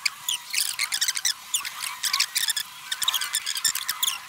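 Rapid high-pitched chirps and squeaks, many short quick sweeps in close succession, with no low sound beneath them.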